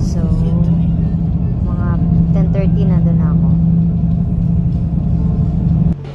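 Steady low drone of engine and road noise inside a Toyota Vios cabin at highway speed, with a voice over it; it cuts off abruptly just before the end.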